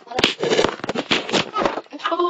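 Crackling rustles and knocks of a webcam microphone being handled and moved about, with a sharp click about a quarter second in.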